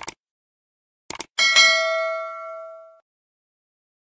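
Subscribe-button animation sound effect: a quick double click, another double click about a second later, then a bright bell ding that rings out and fades over about a second and a half.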